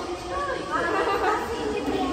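Several people chattering and talking over one another, with voices rising about half a second in.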